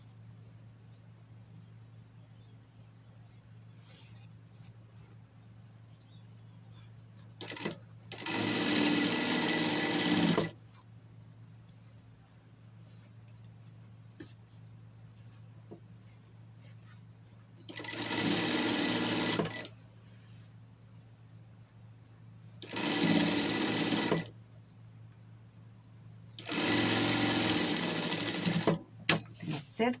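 Industrial sewing machine topstitching in four short runs of a couple of seconds each, with a low steady hum between runs.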